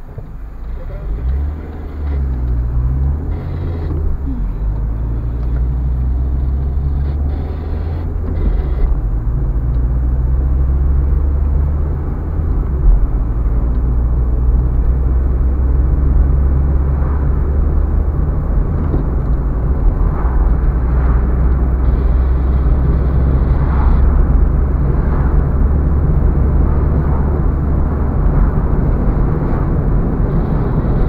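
A car being driven on the road: a steady low engine and tyre drone whose pitch shifts in the first few seconds.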